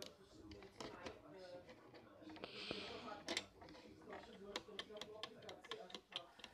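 Small plastic Lego pieces handled by fingers, giving a scattering of faint, sharp clicks, with quiet murmured speech underneath.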